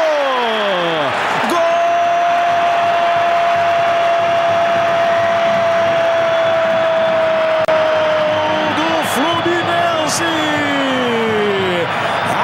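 Brazilian football commentator's drawn-out goal shout, one note held for about seven seconds and slowly sinking in pitch, over the steady roar of a stadium crowd. Shorter falling shouts come at the start and again near the end.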